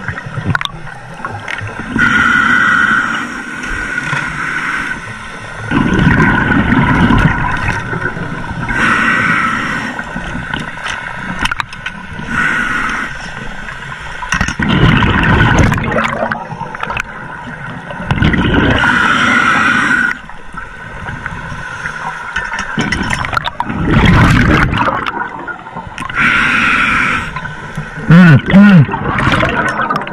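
Scuba breathing through a regulator underwater: a hiss on each inhale alternating with a low burst of gurgling exhaust bubbles on each exhale, a slow, regular cycle of about one breath every six seconds.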